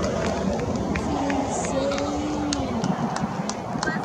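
Steady rushing outdoor noise with faint, distant voices, one drawn-out call about a second in.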